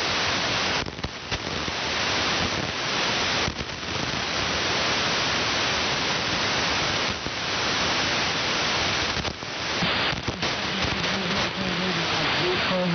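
Shortwave receiver tuned to the 3.885 MHz AM calling frequency on the 75-metre band, giving a steady rush of band noise and static between transmissions. The noise drops out briefly several times. The band is noisy under poor propagation conditions, which the operator blames on a solar storm.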